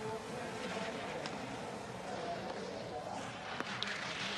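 Skis carving on hard snow through giant slalom turns: a steady scraping hiss, with a few faint clicks.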